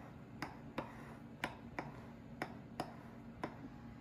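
A metal fork pricking raw pie dough in a pie plate, its tines clicking against the dish beneath about three times a second: the crust being docked so it won't bubble in the oven. The clicks stop shortly before the end.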